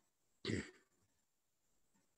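A person coughs once, short and sharp, about half a second in, heard through a Zoom call's audio.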